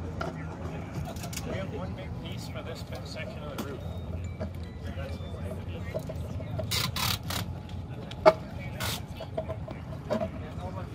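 Indistinct voices of people talking over a low steady hum, with a few short scrapes and one sharp click about eight seconds in.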